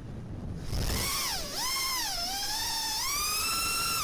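FPV quadcopter's brushless motors (Cobra 2207 2300kv) whining with the throttle, over wind rush. After a quieter first moment the whine comes in strongly, dips in pitch twice, then climbs steadily as the throttle is pushed.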